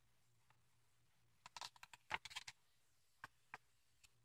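A picture book's paper page being turned: a short cluster of rustles and clicks in the middle, then two single ticks near the end.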